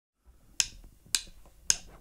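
Drumsticks clicked together in an even count-in: three sharp clicks a little over half a second apart, giving the tempo before the band comes in.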